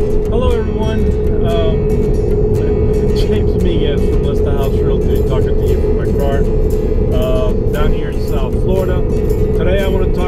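Steady low road and engine rumble inside a moving car's cabin, with a thin steady hum running under it, beneath a man's talking.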